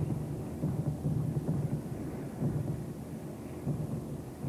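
Low, continuous rumbling of an aerial bombardment, swelling and fading irregularly without sharp individual bangs.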